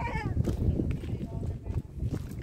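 A person's short voiced sound at the very start, over a steady, uneven low rumble on the microphone as the camera is carried over the rocks.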